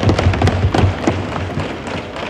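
Many hands thumping on wooden desks in a quick, irregular patter: legislators' desk-thumping applause, thinning out toward the end.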